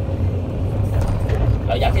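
Excavator engine running steadily under load as a rumble, heard from inside the operator's cab while the bucket swings loaded soil over a dump truck's bed.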